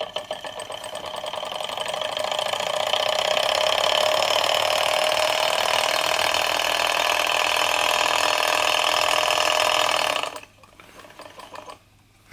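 Small Stirling engine kit running at speed, a steady mechanical running sound from its flywheel, crank and pistons. It grows louder over the first few seconds, holds steady, then cuts off abruptly about two seconds before the end.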